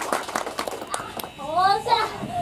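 Spectators applauding at close range: a patter of scattered hand claps that thins out after about a second. Near the end a high voice calls out briefly, rising in pitch.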